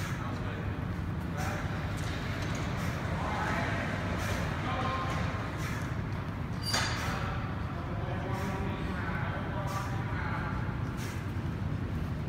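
Indistinct voices talking in the background over a steady low hum, with a few short soft knocks scattered through.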